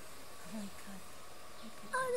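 Puppies making a few faint, short whimpers over a steady background hiss, with a person's voice starting right at the end.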